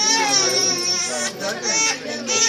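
An infant crying in wavering wails, mixed with several people's voices.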